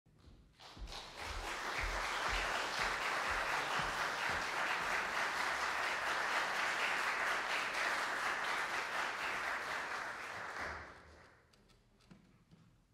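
Audience applauding for about ten seconds and dying away near the end. A few low footfalls, about two a second, come through under it during the first few seconds.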